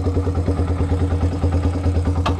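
Kawasaki Binter Merzy (KZ200) chopper's single-cylinder four-stroke engine idling with a rapid, even beat of about ten pulses a second.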